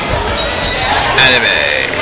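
Indistinct voices talking, not transcribed as words.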